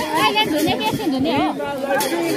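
A crowd of people talking over one another, with high children's voices among them.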